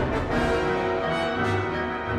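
Symphony orchestra playing a dense, sustained passage, with brass and strings sounding together.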